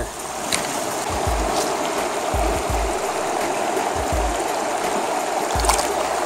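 Small mountain stream running over a shallow rocky bed, a steady close rush of water. A few soft low bumps, as of the phone being handled, sound under it.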